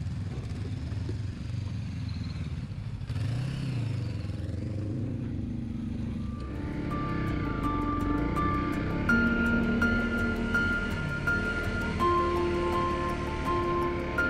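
A motorcycle engine runs steadily while riding, its pitch briefly rising and falling about three seconds in. About halfway through, background music with sustained notes and a ticking beat comes in and plays over the engine.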